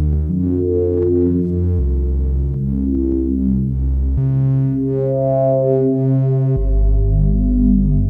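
Eurorack modular synthesizer playing an ambient patch: sustained bass notes that step to a new pitch every couple of seconds, with slowly shifting higher tones above them.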